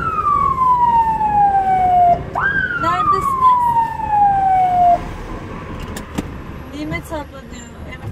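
Ambulance siren sounded in short manual sweeps, heard from inside the cab: one already sliding down at the start, then a second that jumps up sharply about two and a half seconds in and slides slowly down for about two and a half seconds. After about five seconds only the engine and road noise remain.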